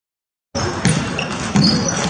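Table tennis balls clicking off bats and tables in a large, echoing training hall with many tables in play. The sound starts abruptly about half a second in, out of silence.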